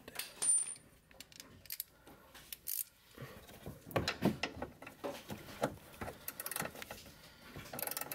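Irregular metallic clicks and taps of a socket and extension being worked onto the car horn's mounting bolt, with a brief high metallic ring about half a second in.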